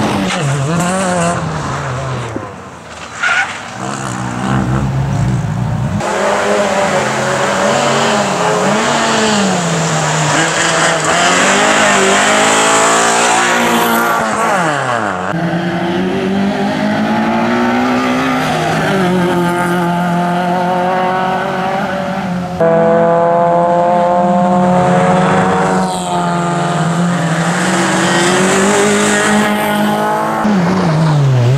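Fiat Seicento rally car's engine revving hard and dropping again and again as it is driven flat out through tight chicanes, with tyres squealing at times. The sound jumps abruptly a few times where the recording is cut between camera positions.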